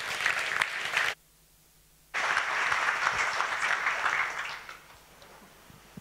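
Audience applauding at the end of a talk. The clapping breaks off abruptly for about a second near the start, comes back, and dies away about five seconds in.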